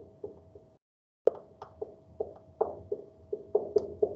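Dry-erase marker knocking and tapping against a whiteboard as letters are written, a string of short taps about three a second. The sound cuts out completely for half a second about a second in.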